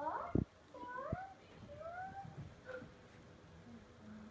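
A young child's high-pitched vocal squeals: four or five short cries that each slide upward in pitch, spread over the first three seconds. Two soft low thumps come in the first second or so.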